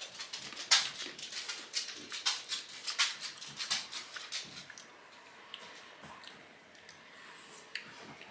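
Close-up chewing and crunching of a frozen chocolate-covered raspberry: a quick run of crisp crackles as the chocolate shell breaks, thinning out after four or five seconds.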